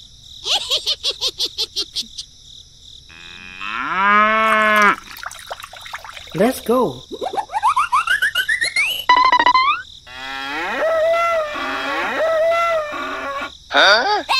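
Cartoon sound effects: a cow moos once about four seconds in, among a rattle of quick clicks before it and squeaky rising sweeps and wobbling tones after it.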